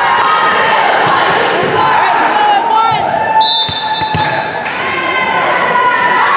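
Indoor volleyball match in an echoing gymnasium: players' and spectators' voices all through, with sneaker squeaks and the knock of the ball. A brief high steady tone sounds a little past halfway.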